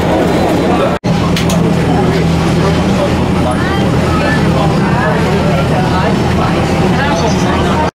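Steady low hum of jet airliner engines at low power, with people talking in the background. The sound drops out briefly about a second in, then resumes.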